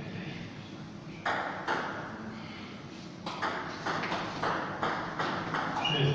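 Table tennis ball bouncing on a hard surface: two bounces a little over a second in, then a quick, even run of bounces about three a second through the second half.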